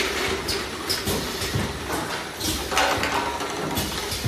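Rotary bottle turntable running, its empty bottles clinking and rattling against each other and the guide rails at irregular moments over a low, steady machine hum.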